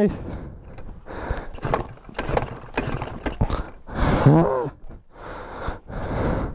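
Pocket bike's small engine being cranked over and over with its hand-operated starter, a run of short, irregular mechanical strokes without the engine catching. It won't fire because the fuel tap is turned the wrong way, shut off.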